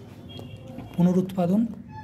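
A man's voice: one brief, drawn-out vowel sound about a second in, after a short lull.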